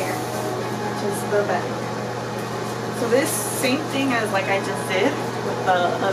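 A steady low hum, like a fan or air conditioner in a small room, runs under a woman's voice speaking in short, soft phrases from about a second in.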